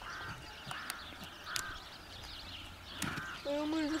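A bird in the background calling in several short, same-pitched calls spread a second or more apart, over a few faint knocks; a man's voice comes in near the end.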